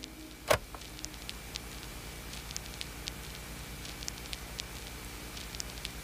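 Vinyl-record crackle: a steady faint hiss dotted with small irregular pops, with one louder pop about half a second in.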